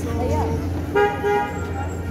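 A vehicle horn toots briefly about a second in, over the chatter of people in a busy street market.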